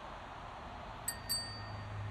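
A small bell dings twice in quick succession about a second in, each ring dying away within half a second, over steady outdoor background noise. A low vehicle engine hum comes up at about the same time.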